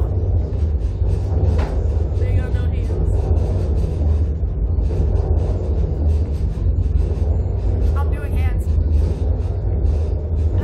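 Steady, loud low rumble of wind buffeting the onboard camera's microphone as the slingshot ride capsule is flung and bounces, with riders' brief faint cries a couple of times.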